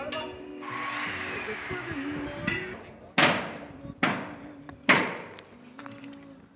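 Three sharp hammer blows, a little under a second apart, each with a short ringing decay, after a stretch of rushing noise.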